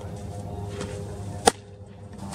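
A pitched softball smacking into a catcher's leather mitt: one sharp pop about one and a half seconds in, over low steady background noise.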